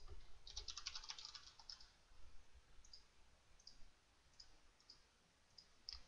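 Faint computer keyboard typing: a quick run of keystrokes for a short word, then single clicks spaced out over the next few seconds.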